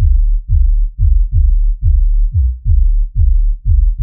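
Soloed sub-bass of a drum and bass track, the low end on its own: deep bass notes pulsing about two and a half times a second, each opening with a quick downward pitch drop. The band is isolated in a multiband compressor that holds its dynamics in check so it won't distort going into the limiter.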